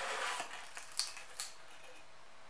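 Cardboard box lid being opened by hand: a short scrape of cardboard on cardboard, then three light clicks and taps as the packaging is handled.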